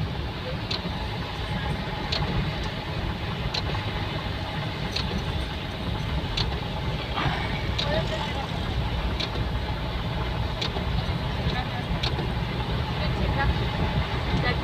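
Steady road and tyre noise inside a Toyota Innova Crysta's cabin as it drives on a wet highway in rain. A faint tick comes about every second and a half.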